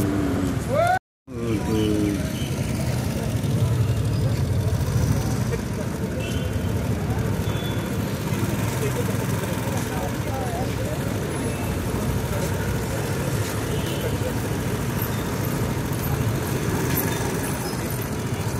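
Street noise: a steady rumble of traffic with indistinct voices, cut by a brief dropout about a second in.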